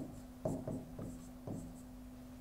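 Stylus writing on an interactive display's screen: a few faint taps and short scratches as numbers are written, over a steady low electrical hum.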